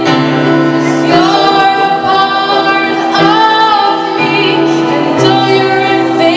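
A woman singing a melody into a microphone with electronic keyboard accompaniment, holding long notes with vibrato over sustained chords that change about once a second.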